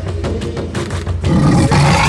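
Background music with a steady beat. Just past halfway, a loud, rough leopard growl comes in over it and is still going at the end.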